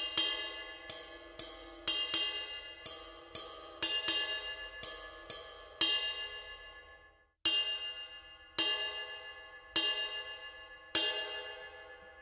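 The small raw bell of a Sabian AAX Muse 22-inch ride cymbal is struck with a stick tip, each hit a bright, ringing ping with a quick decay. The hits come about twice a second at first. About halfway through they stop and the bell rings out to a brief silence, then they resume about once a second.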